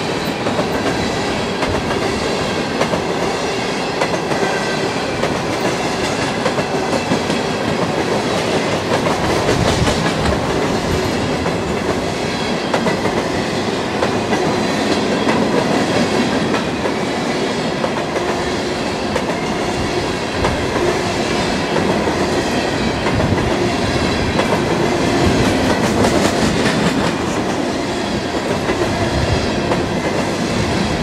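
Covered hopper cars of a long freight train rolling past at close range: a steady rumble of steel wheels on rail, with a constant clickety-clack from the wheels crossing rail joints.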